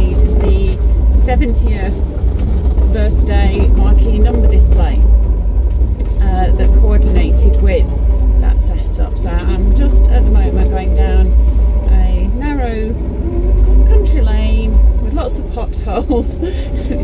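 A woman talking inside a moving van's cabin, over the steady low rumble of the engine and road.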